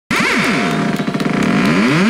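House music played from a DJ set, led by a synth that sweeps rapidly down and up in pitch again and again, several glides overlapping.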